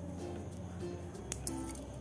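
Soft instrumental background music with held notes. Two brief clicks come about a second and a half in.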